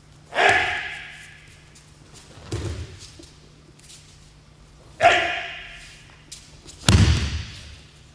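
Two aikido throws on gym mats. Each begins with a sharp burst that echoes in the hall as the attack is met, followed about two seconds later by the heavy thud of the thrown partner landing and rolling on the mat; the second landing, near the end, is the heavier.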